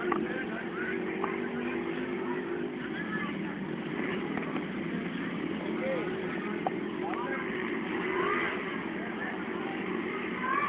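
Faint distant voices over a steady background hum, with one light click about seven seconds in.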